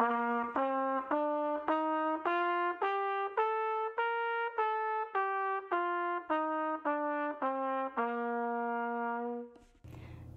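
Trumpet playing a one-octave scale up and back down, one note at a time, ending on a held low note.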